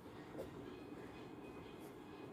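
Faint scratching of a pen writing on paper, with a small tick about half a second in, over low steady background noise.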